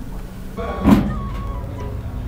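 News-programme transition sound effect: a rising whoosh that peaks about a second in, followed by a few short held musical tones.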